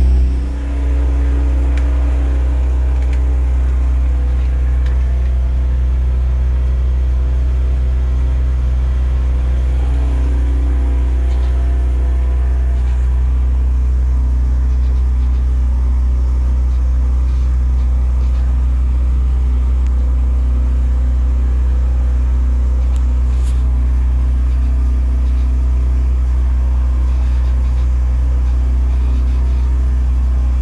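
The catamaran's motor running steadily as the boat motors along: a constant low drone with a steady hum of several tones above it that does not change.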